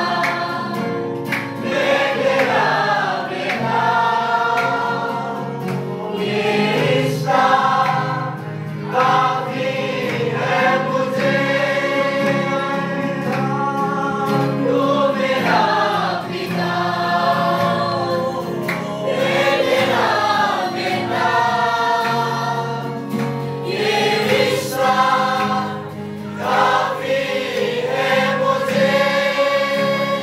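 A choir singing a Christian worship song in long held phrases over steady sustained accompaniment.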